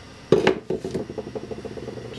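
A sharp metal clunk as the drawknife and its jig are set against the bench grinder's tool rest, followed by a quick, even run of light metallic ticks as they are shifted into position.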